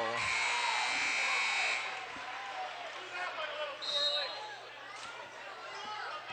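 Referee's whistle: one steady shrill blast lasting about a second and a half, stopping play for a travelling violation, over the murmur of a gym crowd. A brief high squeak follows about four seconds in.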